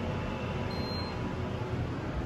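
Steady low rumble and hum inside the cab of a Montgomery KONE hydraulic elevator, with a faint high tone briefly near the middle.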